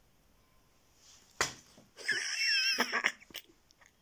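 Kittens play-fighting: a short, sharp spit-like burst about a second and a half in, then a high, wavering squeal lasting about a second.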